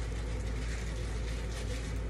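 A steady low hum with an even hiss above it, and faint rustling from hands handling a plastic sandwich bag around a dreadlock.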